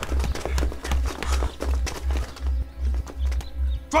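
Tense film score with a steady low drum pulse at about two and a half beats a second, over the clatter of several soldiers' boots running on stone paving.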